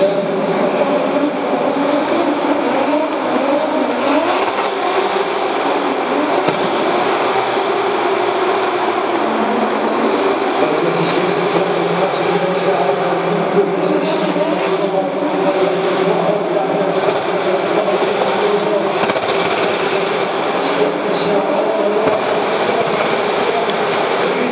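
BMW E36 drift car's engine held at high revs through a drift, its pitch rising and falling as the throttle is worked.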